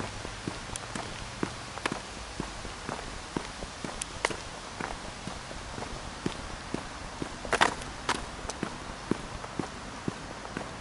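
Footsteps on a paved path scattered with dry leaves, about two steps a second, with a brief louder crackle a little past halfway.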